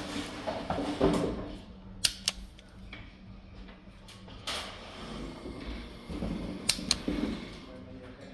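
Handling noise of network cable wires being worked into a plastic RJ45 keystone jack, rustling, with a few sharp clicks in pairs about two seconds in and again near seven seconds.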